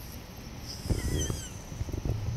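Siberian husky giving a short, high, wavering yip-whine about a second in as it jumps up in excitement, with low thumps and rustling from its movement and the camera.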